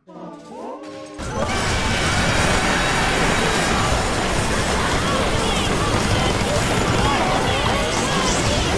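Many overlapping copies of the same cartoon soundtrack, with voices, music and effects, playing at once at different speeds and merging into a dense, loud jumble. A brief voice-like snippet comes first, and the full pile-up sets in about a second in.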